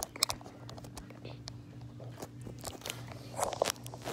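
Handling noise from a phone moved about close to the microphone: scattered clicks and short rustles, with a louder rustle about three and a half seconds in, over a steady low hum.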